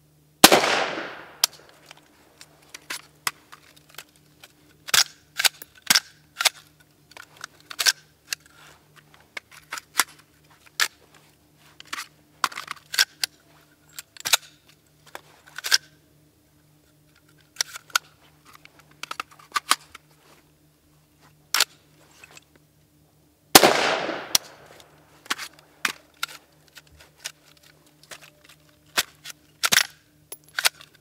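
Two rifle shots from a Robinson Armament XCR, one near the start and one about 23 seconds later, each ringing out in a long echo. Between and after the shots come many sharp metallic clicks and clacks as the rifle is handled. The mud-fouled rifle is still malfunctioning after its rinse.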